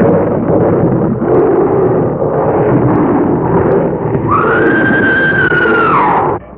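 A loud, rough din of animal roaring, then about four seconds in a woman's high scream, held for nearly two seconds and dropping away at the end, on an old film soundtrack with little treble.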